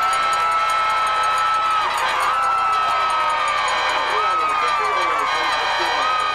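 Football crowd cheering a long touchdown run. One voice close to the microphone gives three long, drawn-out yells over the cheering.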